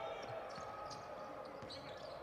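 Faint on-court sound of a basketball being dribbled on a hardwood floor, a few soft bounces over the steady low murmur of an arena crowd.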